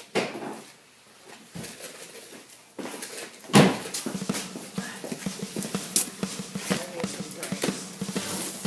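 Handling noises: rustling and a series of knocks and clicks as things are moved about, with the loudest thump about three and a half seconds in and a sharp knock about six seconds in.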